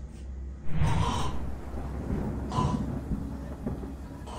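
A man gasping twice, sharp and breathy, as he is choked: a longer gasp about a second in and a shorter one past the middle. A steady low hum runs underneath.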